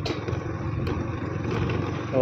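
Motor scooter running steadily while being ridden, its low engine hum under a constant rush of wind and road noise.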